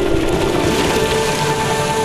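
Breaking ocean surf, a steady rushing hiss of water, with background music holding long notes underneath.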